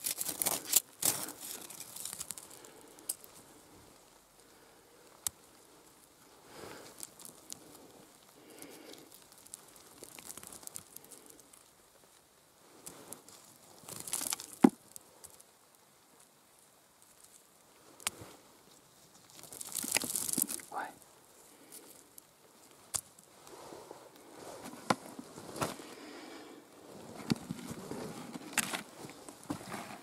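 A knife blade scraping and digging into a crumbly bank of gravelly soil, with loose grit and small stones trickling and clattering down. It comes in irregular bursts with scattered sharp clicks; the loudest bursts are about halfway and two-thirds of the way through.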